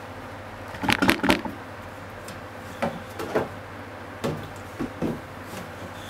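Several light knocks and clacks of kitchen handling, a quick cluster of three about a second in and then single ones every second or so, over a steady low background noise.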